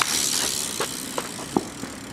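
A BMX bike rolling close past, its tyres hissing on paving; the hiss fades after about a second, followed by a few short clicks and rattles from the bike.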